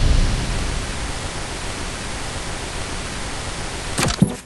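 A steady, loud rushing hiss like TV static, slowly fading, with a couple of sharp thuds right at the end.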